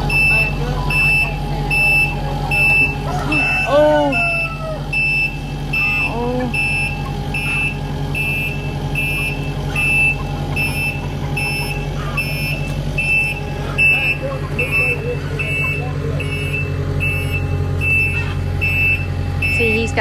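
Takeuchi TL8 compact track loader's diesel engine running steadily while its backup alarm beeps about three times every two seconds as the machine reverses, inching a load into position.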